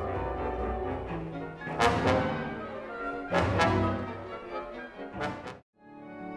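Chamber orchestra of strings, woodwinds, brass and percussion playing contemporary classical music, with sustained chords punctuated by several sharp accented hits. The music cuts off suddenly near the end.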